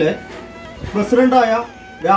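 A man's voice speaking, with soft background music underneath.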